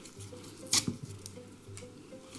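Soft handling noises of a small plastic Copic ink refill bottle and its folded paper label being turned and picked at in the hands, with one sharper click a little under a second in.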